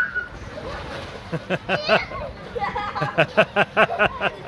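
A person laughing in runs of quick, rhythmic 'ha-ha' pulses that grow loudest near the end.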